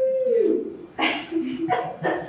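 Excited cheering voices: a drawn-out cry that slides down in pitch in the first half second, then two short exclamations about a second in and near the end.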